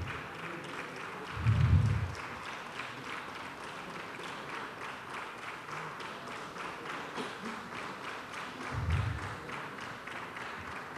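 Audience applauding steadily, a dense patter of many hands clapping, with two dull thumps, one about a second and a half in and one near the end.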